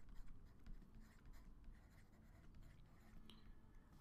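Very faint scratching and light taps of a stylus writing on a tablet, close to silence.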